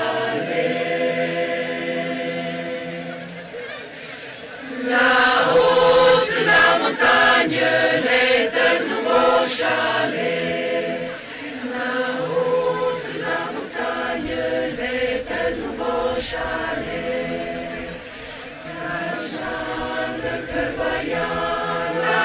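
Choir singing held, harmonised notes, growing louder about five seconds in.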